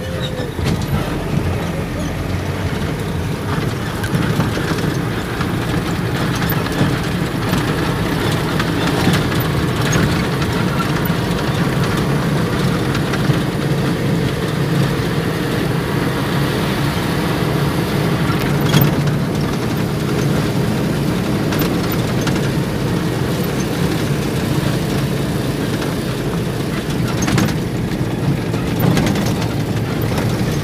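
Steady engine and road noise heard from inside a moving vehicle, a low hum that holds even, with a few faint clicks and rattles.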